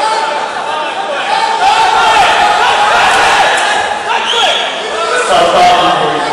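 Several people's raised voices calling out over one another, echoing in a large sports hall.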